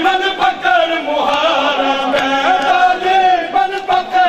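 Male voices chanting a Punjabi noha, a Shia mourning lament, in a sustained, melodic line that rises and falls.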